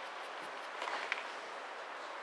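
Steady hiss of room noise in a quiet tournament hall, with a few soft clicks and shuffles about a second in.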